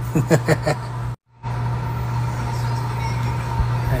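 A steady low hum, with a few brief soft voice sounds in the first second, broken by a momentary total dropout a little over a second in.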